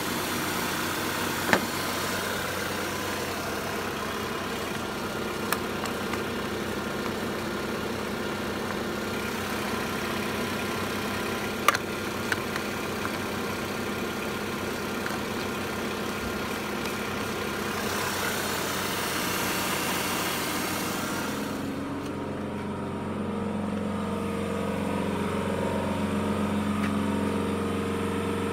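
Renault Laguna II engine idling steadily, with a few sharp clicks. Near the end the sound turns lower and fuller as it is heard from the rear of the car.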